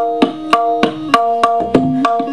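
Tabla played solo in teentaal. There are quick crisp strokes on the dayan, about five or six a second, each ringing at the drum's tuned pitch. Lower bayan bass strokes join in during the second half.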